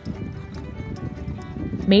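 Hooves of a harnessed pair of horses clopping as they walk on a dirt road, over faint background music.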